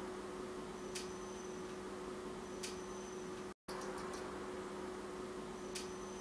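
Background noise of the recording: a low steady hiss with a faint electrical hum, broken by three faint ticks and a split-second dropout a little past halfway.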